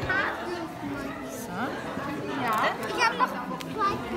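Indistinct chatter of several people talking, with a few light clicks near the end.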